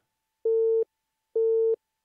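Morse code sidetone keyed by the Begali Sculpture Swing sideswiper: two steady beeps, each just under half a second, sounding as the paddle closes the contacts.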